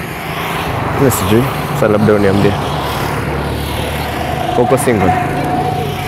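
A motor vehicle going by on the road: engine hum and tyre noise build over the first couple of seconds, hold, and ease off near the end, under talk.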